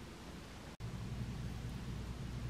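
Faint background noise; after a sudden break a little under a second in, a low steady hum comes in and holds.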